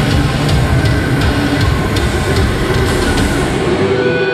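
Live speed-metal band playing loud and dense: heavily distorted electric guitars over a drum kit, forming a thick low-heavy wall of noise with drum hits cutting through.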